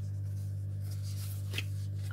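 Paper sticker sheets being handled and shuffled, a soft rustle with a brief tap about one and a half seconds in, over a steady low hum.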